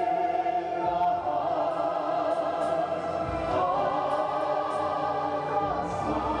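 Operatic choral music: a choir singing long held notes in chords. A high sustained note breaks off about a second in, and a new chord swells in a little past the middle.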